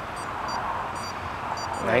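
Heart rate monitor beeping: a run of short, high beeps, a few a second, the alert that the wearer's heart rate is out of its set zone.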